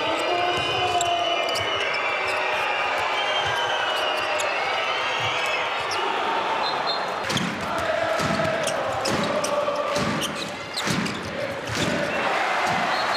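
A handball bouncing and striking the indoor court in sharp repeated knocks, thickest in the second half, over the arena crowd's voices chanting.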